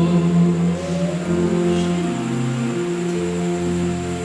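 Slow worship music with long held chords that change every second or so, and a sliding sung note about a second in.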